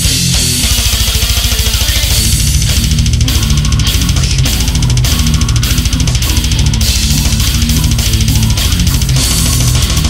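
Brutal death metal: a downtuned, distorted guitar riff over fast, dense drumming with bass drum.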